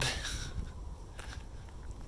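Faint outdoor ambience: a steady low rumble of wind on the microphone with a few soft scuffs, like footsteps, around the middle.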